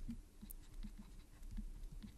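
Faint scratching and light taps of a stylus writing on a tablet, over a low steady hum.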